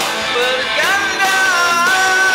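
A rock-style song with a singer. The voice slides up about a second in and then holds one long note over the instrumental backing.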